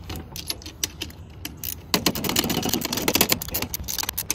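Small hand wrench clicking and clinking against the nuts and steel awning bracket as the mounting nuts are tightened by hand, a run of quick metal clicks that gets busiest and loudest about halfway through.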